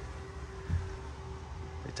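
Low steady background hum with a faint steady tone above it, and a soft low thump about three quarters of a second in.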